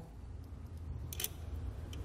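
A faint single metallic click as a nut and ring terminal are handled on a battery terminal stud, over a low steady background hum.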